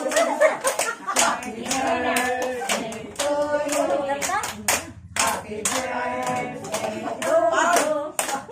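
A group of people clapping their hands in a steady rhythm while singing together, with a brief break in both just after the middle.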